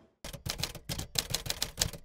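A typing sound effect: a quick, uneven run of about a dozen sharp key clicks, starting a quarter second in.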